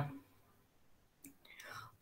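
A quiet pause with a faint breath drawn in near the end.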